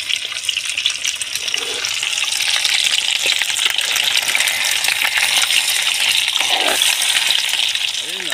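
Fish pieces frying in hot oil in a steel pan, a steady crackling sizzle that grows a little louder after about two seconds, with a metal spatula stirring them.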